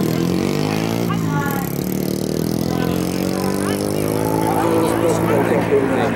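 A race car engine running at low revs, its pitch sagging and climbing slowly, under indistinct voices.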